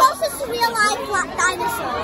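Children talking.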